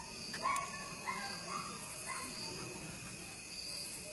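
Faint outdoor background: a steady high chirring like insects, with a few short, faint calls about half a second, a second and two seconds in.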